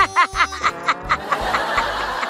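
A burst of laughter over background music with a steady beat: a quick run of short 'ha-ha' syllables, then breathier laughing pulses about four times a second.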